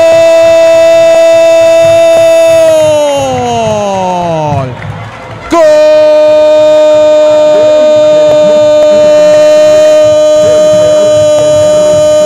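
Football commentator's drawn-out "gol" cry after a goal, one long vowel held on a steady pitch that slides down and trails off about four to five seconds in as his breath runs out. He takes it up again a second later, a little lower, and holds it for several more seconds.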